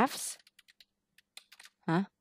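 Typing on a computer keyboard: a quick run of about eight to ten light keystroke clicks as a search term is typed.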